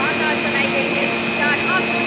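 Gondola lift station machinery running with a steady low hum and a constant high-pitched whine as a cabin moves around the terminal's return loop.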